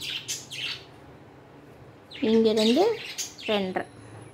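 Two short squawk-like bird calls, the first sliding up in pitch about two seconds in, the second sliding down about a second later. Between and around them, soft scratchy strokes of tailor's chalk drawn along a steel ruler on cotton fabric.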